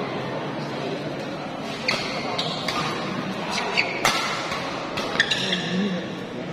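A badminton rally: sharp racket strikes on the shuttlecock come in a quick irregular series from about two seconds in, with short high squeaks of shoes on the court, over a steady murmur of crowd chatter in the hall.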